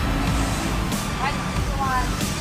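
Outdoor market ambience: a steady low rumble with faint voices of people nearby, and music playing in the background.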